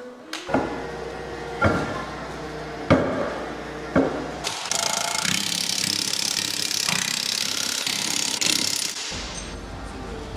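Cordless impact wrench tightening the lug nuts on a trailer wheel: a few short hits about a second apart, then one long steady hammering run of about four seconds that cuts off near the end.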